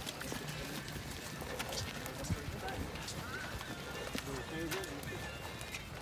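Footsteps of a group of people walking together on a paved path: many irregular overlapping steps, with faint talking among the group.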